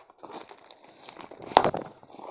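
Cardboard box flaps being pulled open and bubble-wrap packaging inside crinkling and rustling under the hands, in irregular crackles with the loudest about one and a half seconds in.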